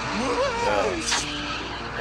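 Animated cartoon soundtrack: a character's wordless voice over a steady low hum. A short noisy swish about a second in comes during a car-driving scene.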